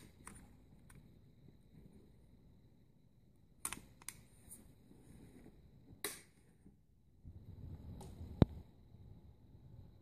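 Daisy Powerline 777 air pistol being handled, its bolt and parts giving a few scattered light clicks, with one sharp, louder click near the end over some brief handling rustle.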